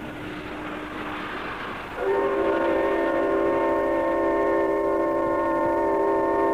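A railway whistle sounding one long, steady, many-toned blast that starts suddenly about two seconds in. Before it there is a quieter rushing noise from the locomotive.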